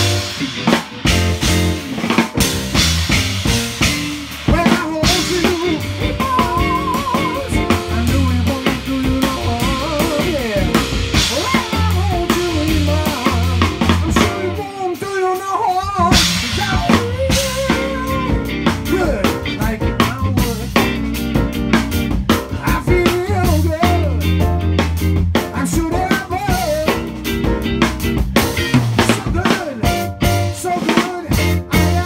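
A live band playing: electric guitar, keyboard and a steady drum beat, with a wavering melodic lead line over the top.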